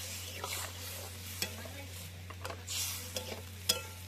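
Food sizzling as it fries in a cooking pot, stirred with a spoon that knocks and scrapes against the pot several times, the sharpest knock near the end.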